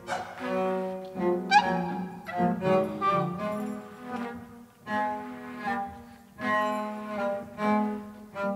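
Slow instrumental music led by a cello playing a melody in short phrases with brief pauses.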